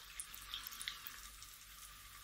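Faint drips of liquid falling from two upturned plastic cups into a bucket of water, a few small drops in the first second and then almost nothing.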